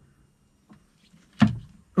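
Quiet handling sounds: a couple of faint ticks, then one sharp click about a second and a half in, from hands working multimeter probes and balance-lead wires in a plastic terminal connector.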